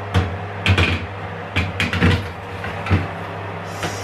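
A metal baking tray being slid into an oven, knocking and clattering several times against the oven's rails and rack as it is pushed in.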